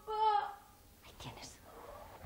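A girl's voice calling out once, briefly and high-pitched, from upstairs, followed by faint, indistinct speech.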